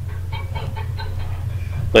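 A steady low hum, with a few faint, brief sounds over it.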